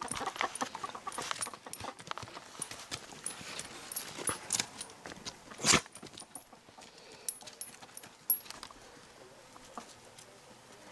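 Dogs roughhousing with an Australian Shepherd-mix puppy on dirt: scuffling paws and bodies, with a few short dog vocal sounds in the first second or so. There is one sharp knock a little before six seconds in.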